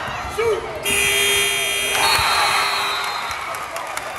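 Gym scoreboard buzzer sounding about a second in, one steady tone held for just over a second before it fades, over crowd noise and voices in the gym.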